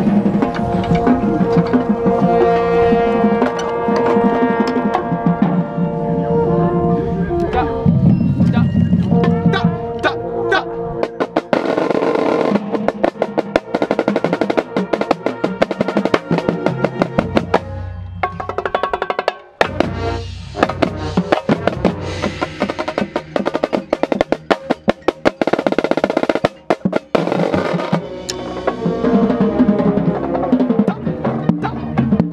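A marching band playing, with a marching snare drum played with sticks close to the microphone. The band holds sustained chords for the first ten seconds or so. From about twelve seconds in, the drumline takes over with fast snare strokes and rolls, backed by bass drums, with a short break a little before the twentieth second.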